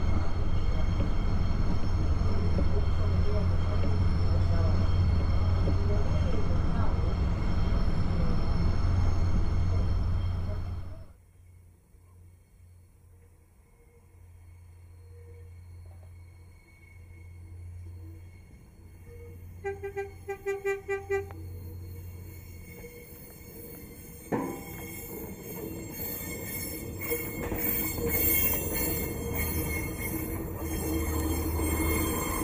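A passenger railcar running, heard from on board as a loud steady rumble for about the first ten seconds, then cutting off abruptly. Next, more quietly, an approaching railcar sounds a quick string of short horn toots about two-thirds of the way in, and its running noise grows louder as it passes close near the end.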